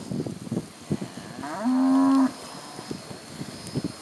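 A cow moos once about halfway through, a single steady call lasting under a second. Faint scattered ticks and rustles come before and after it.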